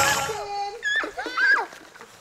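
Music fading out, then short high-pitched children's calls and squeals about a second in.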